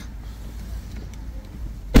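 Low steady rumble of a car cabin, with one sharp knock near the end.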